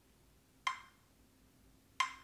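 Metronome app on a phone clicking a slow, steady beat: two short clicks with a brief high ring, about a second and a third apart, each click marking a quarter note.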